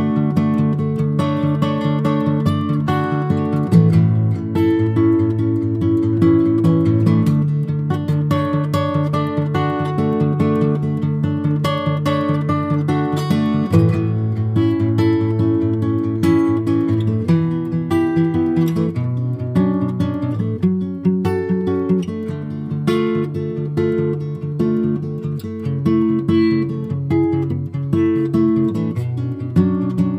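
Two acoustic guitars playing an instrumental passage together, a steady stream of picked notes and chords with no singing.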